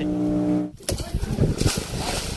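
A small fishing boat's motor running steadily, stopping suddenly less than a second in; then water splashing hard as a large stingray thrashes in shallow water.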